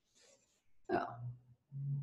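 Speech only: a short exclaimed "oh" about a second in, then a low hummed "mm" near the end.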